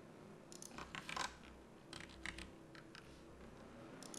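Faint clicking of a computer keyboard and mouse, in a few short clusters of rapid clicks during the first two and a half seconds.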